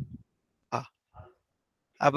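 A man's short, quiet vocal noises between sentences: a brief low hum at the start, then a short throat sound near the middle and a fainter one after it.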